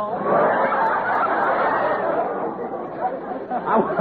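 A large studio audience laughing in one long, loud wave that eases off near the end.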